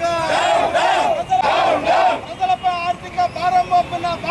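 A crowd of protesters shouting a slogan together twice in the first two seconds, answering a leader's shouted calls. Between and after the crowd's shouts, the lead voice calls out alone.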